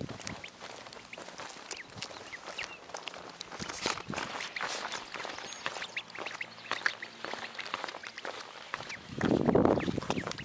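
A duckling peeping over and over as it follows a person's footsteps on pavement, with a louder rush of noise near the end.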